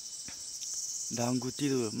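Steady, high-pitched chorus of insects in a ripe rice paddy, with a person's voice calling out in the second half.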